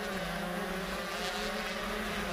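On-board sound of a Honda 125cc two-stroke shifter kart engine running at steady, high revs, a continuous buzzing tone that holds nearly the same pitch throughout.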